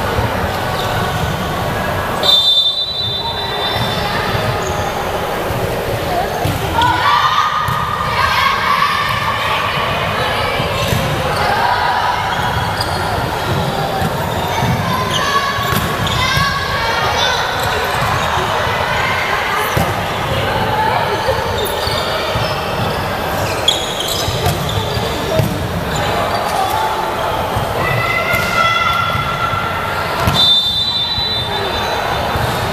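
Indoor volleyball play in a large, echoing sports hall. A referee's whistle blows about two seconds in, then a rally follows with the ball being struck, short high-pitched squeaks and players calling out, and a brief whistle again near the end.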